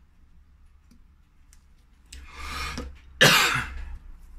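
A person coughing twice, the second cough louder and sharper.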